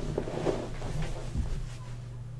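Faint rustling and a couple of dull low thumps, one at the start and one about one and a half seconds in, as a person shifts position in his chair, over a steady low electrical hum.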